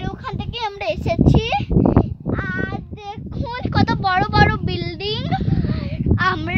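A child's high voice singing, with the pitch wavering up and down, over a low rumble of wind on the microphone.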